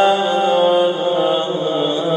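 A man's voice chanting a Muharram rawza recitation in long held notes that bend slowly in pitch.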